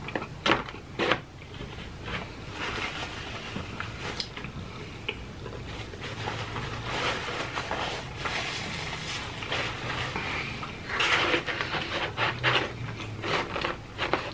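Chewing and mouth sounds of a person eating cheese pizza, with a couple of sharp clicks about a second in and a louder run of crackling, rustling handling noises near the end as slices are picked up from the cardboard pizza box.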